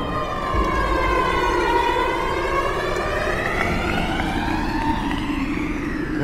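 A siren-like electronic tone with several overtones, gliding slowly down in pitch and then rising back up, over a low rumble.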